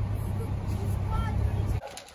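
Steady low rumble of a road vehicle on the move, with faint high voices over it now and then; it cuts off abruptly near the end.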